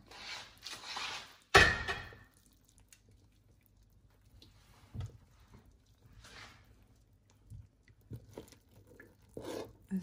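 Glass slow-cooker lid set down with one sharp clank about one and a half seconds in, ringing briefly. After that it is mostly quiet, with a few faint knocks and rustles.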